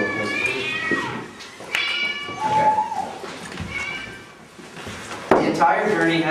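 A series of high-pitched, meow-like vocal calls, some gliding down in pitch, separated by short pauses. A louder voice-like sound comes in near the end.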